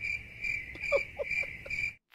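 Crickets chirping, a steady high trill pulsing about twice a second that cuts off abruptly at the end: the stock 'crickets' sound effect used as an awkward-silence gag.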